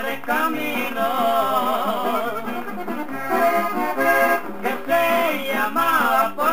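Accordion playing the melody of a Mexican corrido over a bass line that repeats on the beat. This is an instrumental passage with no singing.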